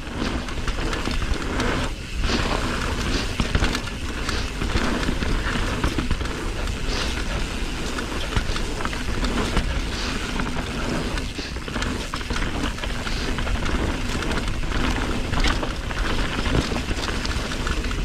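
Wind rushing over the microphone and tyres rolling over packed dirt as a Yeti mountain bike descends a singletrack at speed, a steady rushing noise broken by a few short knocks as the bike goes over bumps.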